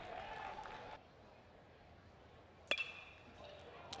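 A single sharp metallic ping of an aluminium baseball bat striking the ball, ringing briefly, about two and three-quarter seconds in. The ball is struck on the handle. Before it there is only a faint crowd murmur that drops almost to silence.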